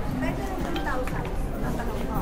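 Chatter of shoppers talking in a crowd, with a few sharp clicks mixed in near the middle.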